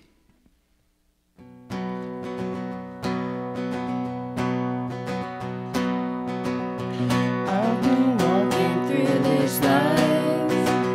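Live worship band beginning a song: after about a second and a half of near silence, acoustic guitars start strumming chords, and voices join in singing about seven seconds in.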